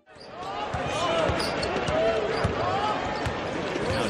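Live NBA game sound from the court: a basketball bouncing on hardwood and sneakers squeaking, over arena crowd noise, rising in over the first second.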